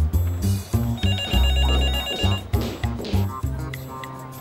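A cordless desk phone ringing unanswered with an electronic trill that lasts about a second, starting about a second in. Background music with a steady bass line plays throughout and is the loudest sound.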